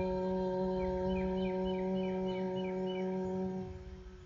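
A steady held musical drone on one pitch fades away near the end. A run of short high chirps sounds over it in the middle.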